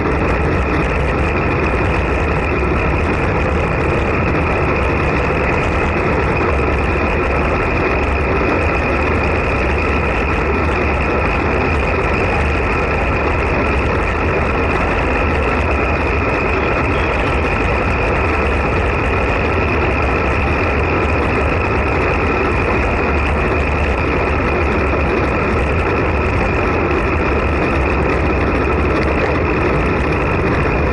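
Steady wind rush over an action camera's microphone on a road bike moving at about 25 to 40 km/h, mixed with tyre noise on asphalt. A faint steady high whistle runs through it.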